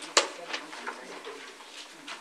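Low murmur of voices in a meeting room, with one sharp knock just after the start and a few lighter clicks after it.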